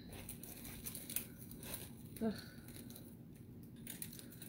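Faint rustling and a few small clicks from hands handling items on a table, with a groaned "ugh" about two seconds in.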